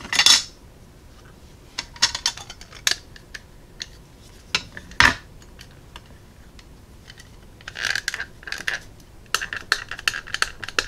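Small hard clicks and taps of an ink pad case and a clear acrylic stamp block being picked up and set down on a craft mat, with a sharp knock about five seconds in and brief scuffing rustles around two and eight seconds.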